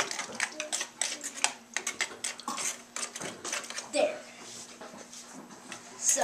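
Spoon stirring borax powder and water in a plastic bucket, a quick run of clicks and scrapes against the sides, stirring to dissolve the borax clumps. The clicking stops about three and a half seconds in.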